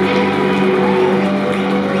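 Live rock band's electric guitars and bass holding a loud, steady droning chord with no drum hits, one note sliding up and back down about a second in.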